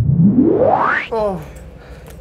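A rising sound-effect sweep climbing steadily in pitch and ending sharply about a second in, laid over the end of the slow-motion replay. Right after it comes a brief voice with falling pitch.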